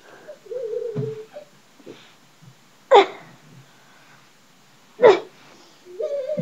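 A brief low hum, then two short, loud, high-pitched squeals about two seconds apart, each falling quickly in pitch.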